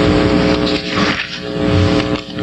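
Bible pages being leafed through close to the pulpit microphone: a dry rustling and scraping of paper that carries on throughout, over a steady electrical hum.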